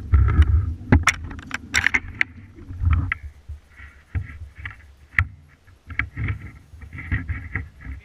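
Handling noise from a phone being moved about: rustling against a fleece sleeve and jeans, with a low rumble on the microphone that is loudest at the very start and a scatter of sharp knocks and clicks.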